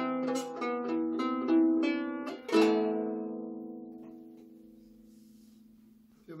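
Anglo-Saxon lyre with a cedar soundboard and fluorocarbon strings, plucked in a quick run of notes. A final chord about two and a half seconds in rings out and slowly fades away.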